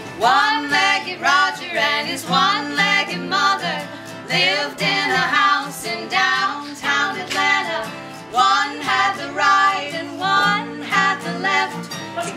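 Unplugged country song on acoustic guitar, mandolin and upright bass, with a woman singing over it; the music comes in sharply at the start.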